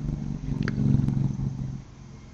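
A low steady motor hum that swells a little in the first second and fades near the end, with one faint click partway through.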